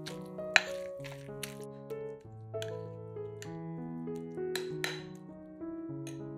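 A metal spoon clinking and scraping against a plate while grated beetroot is stirred together with mayonnaise, a handful of sharp clinks with the loudest about half a second in, over soft background music.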